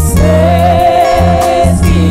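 Live gospel worship music in church: voices sing one long held note over a band with a steady bass line, the note ending near the end.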